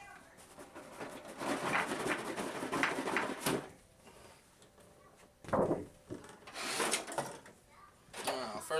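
Cardboard model-kit box being opened and its contents handled: scraping and rustling of the cardboard lid and the plastic parts inside, with a sharp knock about three and a half seconds in and a louder thump just past the middle.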